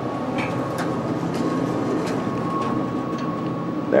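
Steady mechanical hum with a thin, steady high tone over it and a few faint clicks, around an Otis hydraulic elevator at its ground-floor landing.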